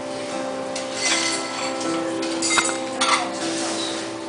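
Acoustic guitar chord ringing and strummed between sung lines, with a few sharp clinks about two and a half to three seconds in.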